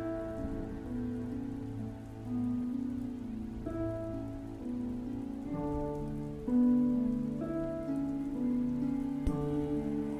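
A steady recording of falling rain layered with soft, slow piano and harp music, the notes held and changing about once a second.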